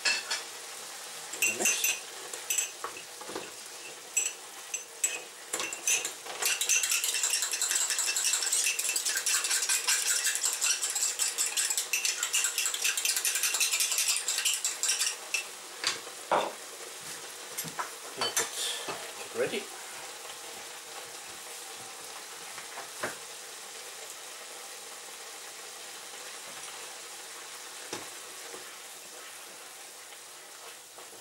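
A metal spoon stirring cornstarch into cold water in a ceramic cup: scattered clinks at first, then a fast, continuous run of clinks against the cup from about a quarter of the way in to about halfway. Beneath it and after it a pan of ground pork and long beans sizzles steadily in its sauce, with a few knocks of the utensils.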